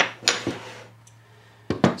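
Scrap wood blocks handled on a wooden workbench top: a sharp knock at the start and a short scrape, a quiet stretch, then a couple of sharper knocks near the end as the blocks are set down again.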